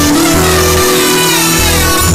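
Continuous instrumental music, held notes shifting to new pitches about every half second over a steady low line.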